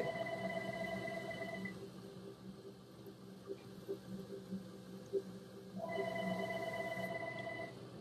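A telephone ringing twice: two warbling electronic rings of about two seconds each, the second starting about six seconds in.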